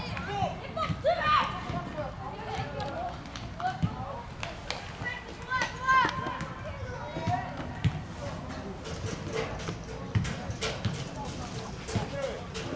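Young football players shouting and calling out across the pitch during play, with running footsteps and a few dull thuds.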